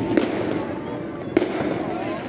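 Fireworks going off: a steady crackle and rumble of bursts, with a sharp bang about a fifth of a second in and a louder one about a second and a half in.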